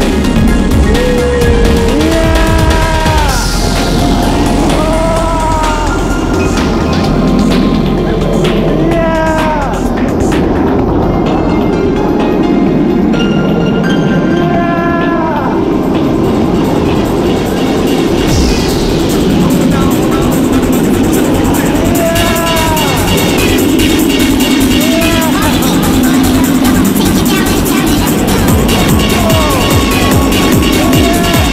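Background electronic music with a steady beat and a melody in short phrases that rise and fall.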